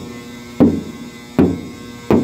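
Two knocks on the steel shell of a cement storage pod, each with a short ring, checking by sound how full the pod is. The pod is pretty much empty, though not quite.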